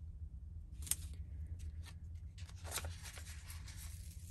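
Paper sticker sheet being handled and a sticker peeled off it: soft, scattered rustling and crinkling, with a sharp click about a second in.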